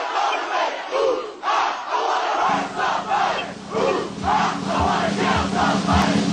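A group of soldiers chanting and shouting loudly in unison, in rhythmic shouted phrases about every half second. About two and a half seconds in, a low steady drone with regular thumps comes in beneath the chant.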